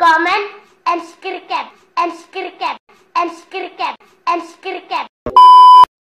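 A child's voice chanting in a steady rhythm, short falling syllables in groups about once a second. Near the end comes a loud steady beep tone, just over half a second long.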